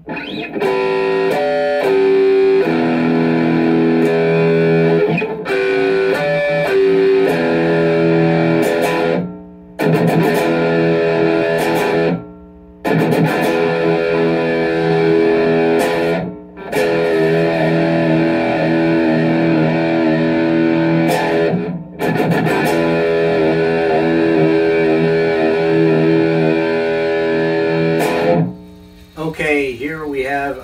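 Fender Mustang electric guitar with two single-coil pickups played through a Fender Mustang GT amp: ringing chords and riffs in several phrases, each ended by a brief stop. Near the end a man's voice starts.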